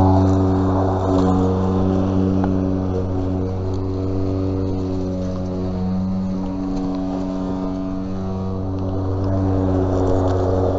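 A steady motor drone with a strong low hum, its pitch wavering slightly.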